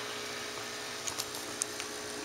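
Cooling fan on an LED heat sink running with a steady hum, with a few faint ticks about a second in.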